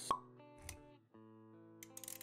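Logo-intro music with held notes, punctuated by a sharp pop sound effect just after the start and a softer low thump about half a second later. The notes briefly drop out near the middle, then start again, with a few light clicks near the end.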